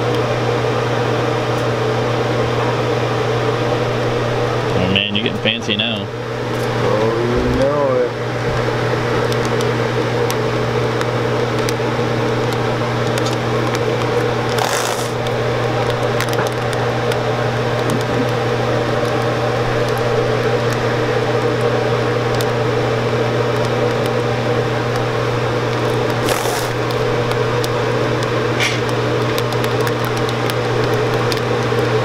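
Chocolate enrobing machine running: its motor, pump and conveyor give a steady mechanical hum. The hum breaks briefly about five to eight seconds in, with a short voice-like sound.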